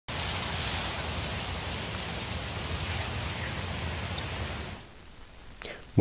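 Evening countryside ambience: a steady hiss with a cricket chirping in an even rhythm, about two and a half chirps a second, fading out near the end.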